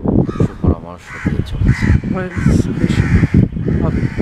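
Crows cawing repeatedly, a run of harsh calls starting about a second in, over a man talking.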